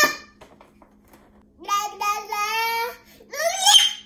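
Toddler babbling without words: a brief cry at the start, a drawn-out vocal sound of over a second in the middle, and a higher, rising call near the end.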